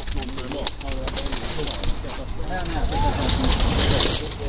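Several men talking and laughing over one another, the words indistinct.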